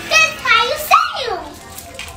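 A young girl's high-pitched vocal sounds without words, ending in a long falling glide about a second in.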